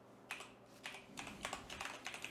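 Faint typing on a computer keyboard: about half a dozen separate keystrokes, starting a moment in, as a command is typed.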